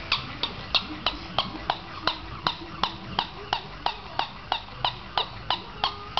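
Plush toy dog barking in a steady run of short, sharp yaps, about three a second.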